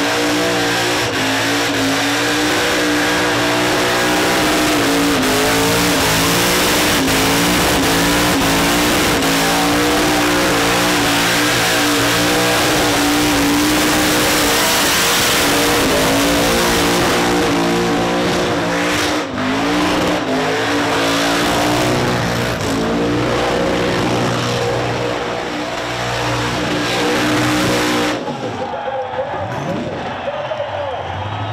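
Supercharged V8 burnout car held at high revs in a burnout, its pitch wavering as the throttle is worked, over the hiss of spinning tyres. The engine sound cuts off near the end.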